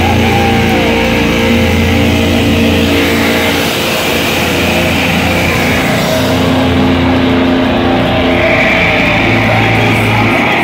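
A heavy metal band playing loudly live, with distorted electric guitars holding long sustained chords. The high cymbal hiss drops away about two-thirds of the way through.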